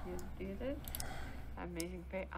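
Faint speech: a couple of short, quiet utterances over a low steady hum.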